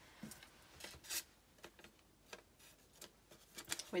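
Faint rustling and a few scattered light ticks from a small piece of paper being picked up and handled on a tabletop.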